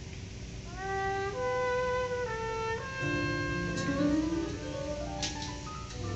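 A band starts playing a slow song, heard through a television's speaker: held chords from several instruments that change every second or so, with a low rising slide about halfway through and a light cymbal tick near the end.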